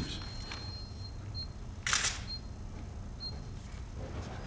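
Still-camera shutters clicking: a few faint clicks and one louder, longer click about halfway through.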